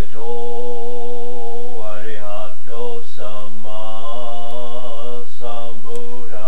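A man chanting a Buddhist mantra in a steady monotone, holding each long syllable on nearly one pitch, with short breaks between phrases.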